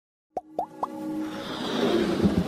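Intro jingle for an animated logo: three quick pops, each sliding up in pitch, come about a quarter-second apart starting a third of a second in, then a swelling electronic build-up.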